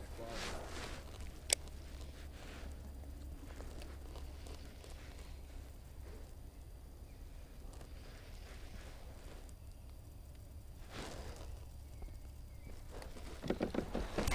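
Quiet open-air ambience on a pond with a low steady rumble and faint handling noises from fishing gear in a kayak, broken by a single sharp click about a second and a half in.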